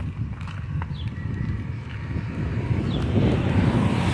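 Wind buffeting the microphone with a low, uneven rumble. A car passes on the street, its noise swelling near the end.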